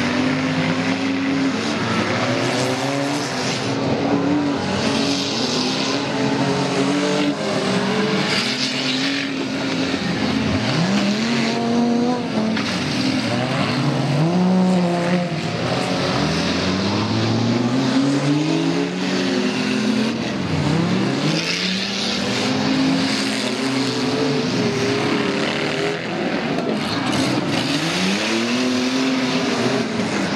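Engines of several stock-class demolition derby cars revving hard, their pitch rising and falling over and over as they accelerate and back off, several at once.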